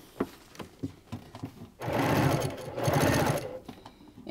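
Home sewing machine stitching a fast, even run of stitches for about two seconds, starting about halfway through after a few faint clicks: top-stitching along a zipper edge through a vinyl-covered fabric panel.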